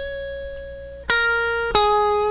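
Distorted electric guitar, a Stratocaster-style solid-body, playing a slow descending single-note line: a held note, then a lower note about a second in and a slightly lower one near the end, each left to sustain.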